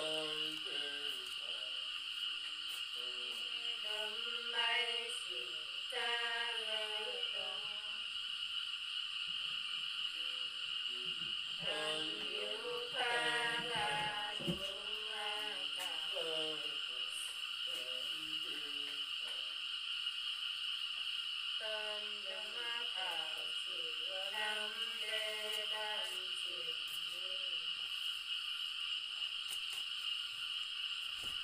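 A woman singing unaccompanied in Nùng folk style, in slow phrases of long, wavering, sliding notes separated by pauses. A steady high hiss runs underneath.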